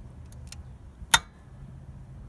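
A single sharp metallic crack about halfway through as a tight, heat-seized nut on the EGR flow reduction plate flange breaks loose under an angled spanner, with a few faint tool clicks before it.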